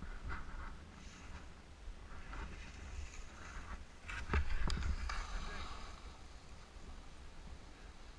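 Skis scraping and hissing over crusty snow as a skier carves past close by, with two sharp clicks about four seconds in, over steady wind rumble on the microphone.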